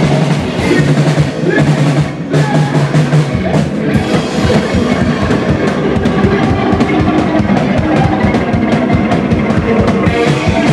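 A hardcore punk band playing loud, with distorted electric guitar and a full drum kit in a club. About four seconds in, the drumming turns into a fast, even pounding.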